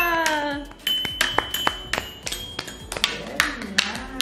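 Child's toy xylophone struck with a mallet: a quick, irregular run of a dozen or so short, ringing taps starting about a second in.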